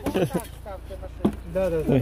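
People talking in short phrases, the words not made out, over a low steady background hum.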